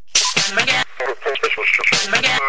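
Electronic dance track with a chopped, spoken-voice vocal sample to the fore and little of the beat under it; the voice cuts in abruptly right at the start.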